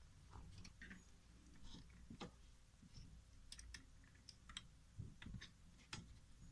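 Faint, irregular clicks and taps of small plastic and metal parts being handled and seated as a shaft with its gear and a metal bracket are fitted by hand onto a Ricoh copier's fuser unit.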